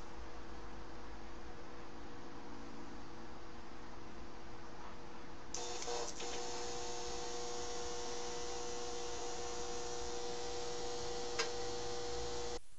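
Steady electrical hum with several steady tones over a hiss, from a homemade high-voltage coil rig running a light bulb. A few faint clicks come about six seconds in and again near the end.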